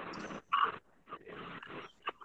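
Background noise coming through a video-call participant's open microphone, cut off at the call's narrow audio band, with one short, louder sound about half a second in.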